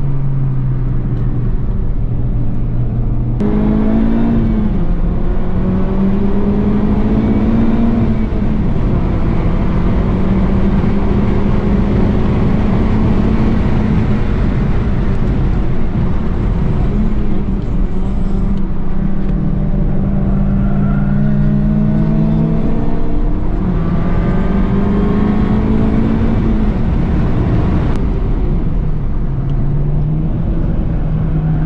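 Honda Civic Type R FK8's 2.0-litre turbocharged four-cylinder engine at full throttle on a race track, heard from inside the cabin. A few seconds in it comes on hard and gets louder. Its pitch then rises and falls several times through the lap, with a sharp break near the end.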